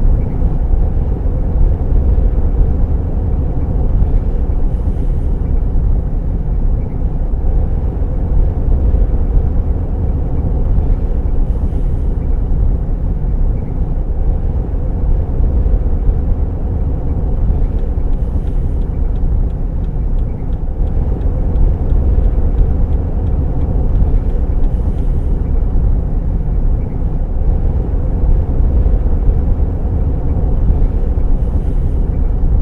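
Steady road noise heard inside a moving car's cabin: engine and tyre rumble at dual-carriageway speed.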